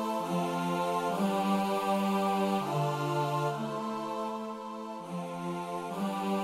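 Korg Triton software synth playing its 'Choir of Light' choir pad: a slow progression of sustained choir chords, changing to a new chord about every one to one and a half seconds.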